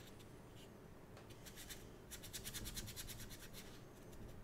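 Ink brush scrubbing on paper: a few scratchy strokes, then from about two seconds in a quick run of short back-and-forth strokes, about nine a second, lasting over a second. Faint.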